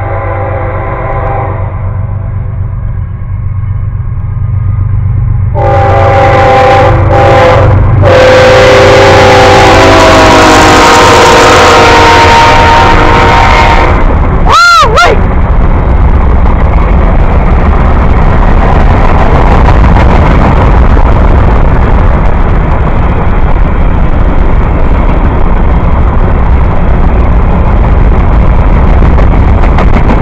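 CSX freight train's locomotive horn: one blast ending just after the start, then from about six seconds in a series of blasts that run into one long blast, its pitch dropping as the locomotive passes about fourteen seconds in. After that comes the steady loud rumble and clatter of covered hopper cars rolling past on the rails.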